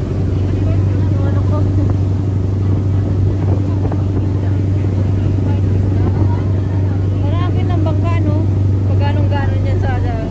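A boat's engine droning steadily under way, with water rushing along the hull; voices talk over it in the last few seconds.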